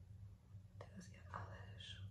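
Faint whispered, breathy speech from a woman over a low, steady room hum.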